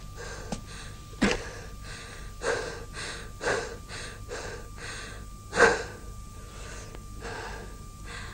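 A person breathing hard, with sharp gasping breaths about once a second, the strongest a little past the middle, over a faint steady high-pitched tone.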